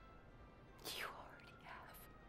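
A woman's breathy, tearful sob about a second in, then a softer breath near the end, over faint sustained music.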